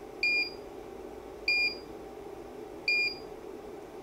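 Three short, identical electronic key beeps from a KX5600 portable ultrasound machine, about a second and a half apart. Each is the machine's confirmation tone as its frequency button is pressed to step the scanning frequency.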